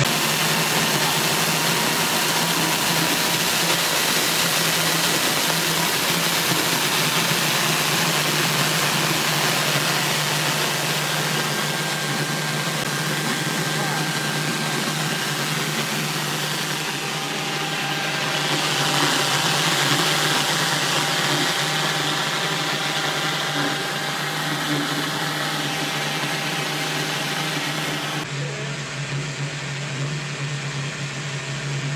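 Homemade forced-air propane burner running steadily: an electric blower pushes air through a stainless steel combustion tube, giving a loud, even hiss of air and flame over a low steady hum. The flame is burning on its own with the spark plug unplugged.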